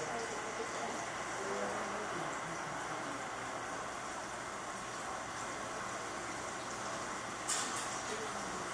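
Steady room noise with faint, indistinct voices of people talking in the background, and a brief sharp click near the end.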